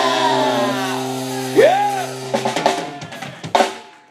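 Live band ending a song: a held final chord from electric guitar and ukulele, with one swooping note that rises and falls about halfway through. Then a quick closing flurry of drum-kit hits that dies away near the end.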